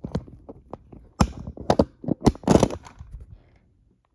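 Handling noise on the recording phone as it is picked up and moved: a run of irregular sharp knocks and rubs on the microphone, thickest around two and a half seconds in, then dying away near the end.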